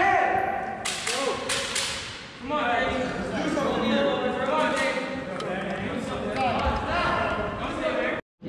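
Indistinct voices of coaches and spectators calling out in a gymnasium, with a quick run of four sharp smacks between about one and two seconds in.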